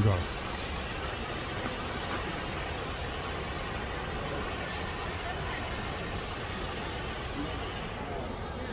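Steady rushing of a large waterfall, with faint voices of people in the distance.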